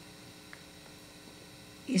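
A pause in speech filled by a faint, steady electrical hum and room tone, with a woman's voice resuming just before the end.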